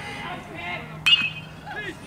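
A metal baseball bat hits a pitched ball about a second in, giving a sharp ping with a brief ring. Spectators' voices are faint around it.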